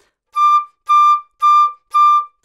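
Concert flute playing the same high D over and over in short, detached notes, about two a second, each on a steady, unbroken pitch with no cracking.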